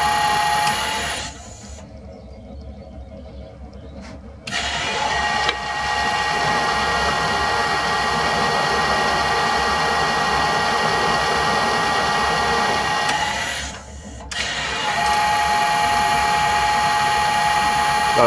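Metal lathe running with a steady whine while an M40x1.5 thread is screw-cut. It runs down about a second in and goes quieter for about three seconds. It then starts again with a rising whine, runs steadily, stops once more near the end and restarts. The pattern is that of the spindle being stopped and restarted between threading passes.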